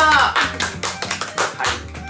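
Hands clapping in quick succession, a handful of people at once, right after a drawn-out shouted vowel falls away at the start.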